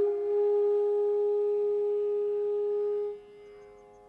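Carnatic venu (bamboo flute) playing raga Ranjani: one long, steady held note that stops about three seconds in, leaving only a faint steady drone.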